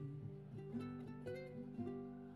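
Two ukuleles playing a quiet instrumental passage: a few picked notes about every half second, each ringing on and fading.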